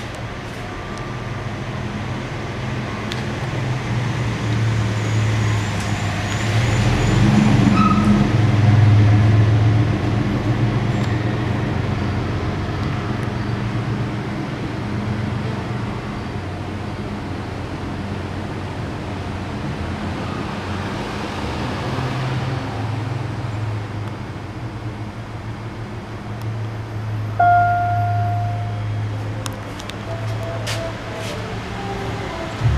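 Low rumble of vehicles in a parking garage, swelling as one passes about 7 to 10 seconds in. Near the end a single electronic chime rings out: the Otis elevator signalling the car's arrival at the floor.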